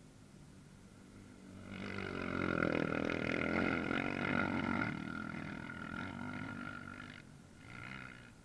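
ATV (quad) engine passing on a dirt race track: it comes up over about a second, runs loudest for some three seconds as it goes by, then fades, with a brief rev just before the end.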